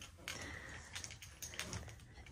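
Quiet room tone with a few faint, soft clicks: footsteps and handling noise as a handheld camera is carried along a carpeted hallway.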